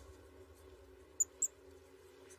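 Two brief, high-pitched squeaks of a small animal, a quarter-second apart about a second in, over a faint, steady low rumble.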